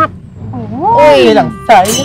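Speech: a person talking in Khmer, with animated rising and falling intonation, over faint background music.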